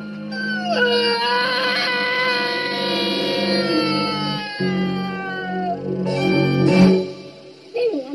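A woman's long wailing scream, falling slowly in pitch over several seconds, over a low droning film score. A loud sharp hit comes near the end.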